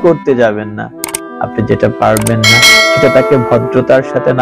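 Subscribe-button animation sound effect: a click about a second in, then a bright bell ding that rings on, over a man's speech and background music.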